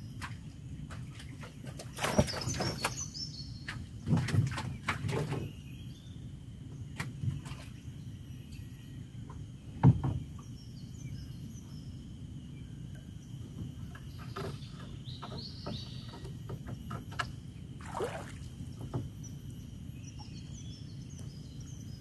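A small wooden boat being paddled: paddle strokes in the water and knocks on the wooden hull come every few seconds, the loudest a single knock about ten seconds in. Birds chirp now and then over a steady faint high tone and a low outdoor rumble.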